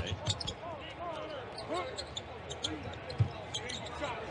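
A basketball being dribbled on a hardwood court in an arena, repeated bounces with one louder bounce about three seconds in.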